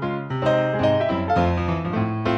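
Piano music accompanying a silent film: a quick run of melody notes over held bass notes.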